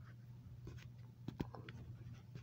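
Faint rustling and a few soft clicks, the sound of a handheld recording device being handled at close range, over a steady low hum.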